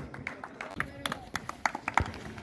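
A few people clapping, scattered, irregular claps that come more often and a little louder toward the end.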